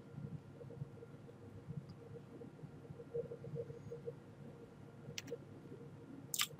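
Faint room tone from a recording microphone: a low, steady electrical hum, with one short click about five seconds in.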